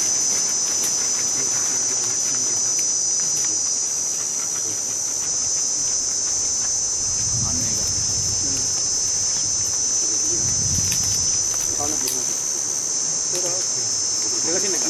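Steady, high-pitched chorus of insects, crickets or cicadas, trilling without a break. A couple of faint low rumbles come in around the middle.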